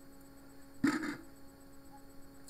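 Room tone with a steady low hum, broken just under a second in by one short, sudden noise.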